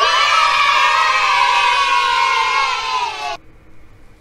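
A group of children cheering together, many voices at once, sliding slightly down in pitch and cutting off suddenly about three and a half seconds in.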